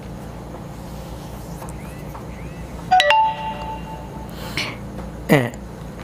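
A short electronic chime from a smartphone about halfway through, a few clear tones stepping up in pitch and fading within a second, over a steady low hum.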